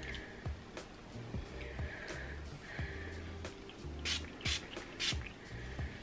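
Three quick spritzes from a pump bottle of hair thickening spray, a little after four seconds in, over quiet background music.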